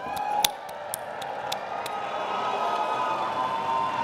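An auditorium audience cheering and applauding, growing gradually louder, with a few sharp claps standing out and steady held tones underneath.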